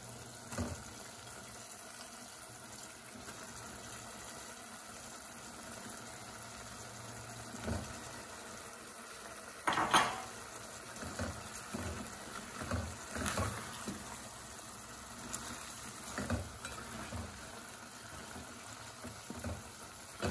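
Curry simmering in a stainless steel pot, with a loud thud about ten seconds in as pieces of hilsa head and tail are put into the pot, followed by a run of knocks and scrapes from a plastic spatula against the pot as the fish is pushed into the sauce.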